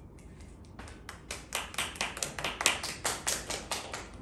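Small audience applauding: scattered hand claps start about a second in and grow denser and louder.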